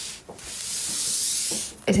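Fabric rubbing against the phone's microphone: a steady scratchy hiss for about a second, cutting off just before speech resumes.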